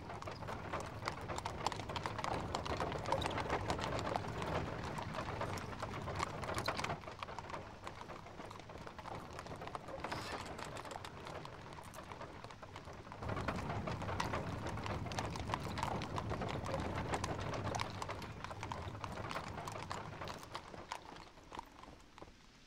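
Horses' hooves clip-clopping on stone paving as horse-drawn carriages move along, a dense patter of many hoofbeats. It eases off about a third of the way in and picks up again suddenly past the middle.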